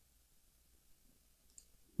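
Near silence, with one faint mouse click about one and a half seconds in.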